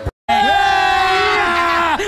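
A brief cut to silence, then a loud, drawn-out yell held for about a second and a half, its pitch sagging near the end.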